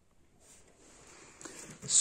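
Near silence at first, then faint rustling of a cardboard parcel box being handled, growing a little louder over the second half.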